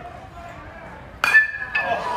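Metal baseball bat striking a pitched ball hard: one sharp crack about a second in, ringing with a high ping for about half a second, then a fainter second clink. It is the hit that goes for a double into the deep left-field corner.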